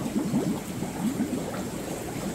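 Air-driven sponge filter bubbling in a concrete fish-breeding vault: a steady churn of many quick rising bubble blips at the water's surface.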